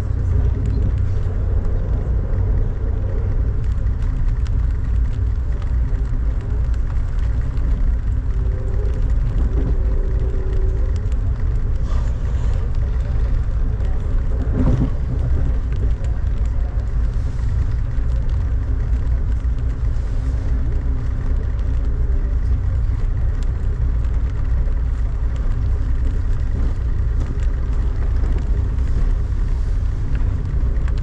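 Steady low rumble of an Amtrak passenger train running at speed, heard from inside the coach: wheels on rail and running gear.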